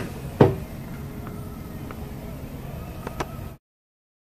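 A single sharp knock about half a second in and a few faint clicks near the end, over a low background hum. The sound cuts off abruptly shortly before the end.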